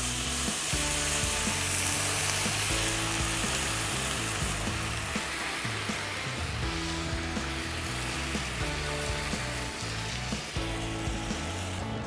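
White wine poured into a hot Dutch oven casserole pan of sautéed peppers, onions and garlic, sizzling hard and bubbling as it deglazes the pan. The sizzle is loudest in the first few seconds and eases off as the liquid settles to a simmer.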